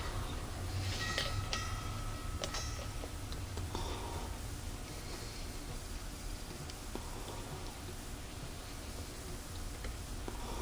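Faint clicks and handling noise as oil is squirted from a Zoom Spout oiler into the oil port of a stopped 1940s Polar Cub fan motor, over a low steady hum. The fan is being oiled because its motor runs weak and buzzes.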